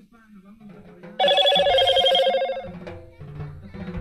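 A loud trilling tone with a ringing, telephone-like quality starts about a second in and lasts about a second and a half, over faint party voices.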